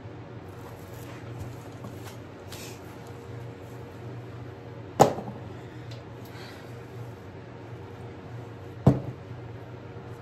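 Two sharp knocks about four seconds apart as objects are set down on a plastic-covered worktable, the first slightly louder, over a faint steady hum.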